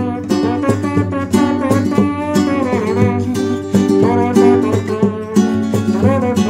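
Nylon-string flamenco guitar strummed in a steady rhythm, with several sharp chord strokes a second.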